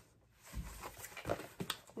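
A cardboard box being picked up and handled, giving a few soft knocks and rustles about half a second in and again through the next second.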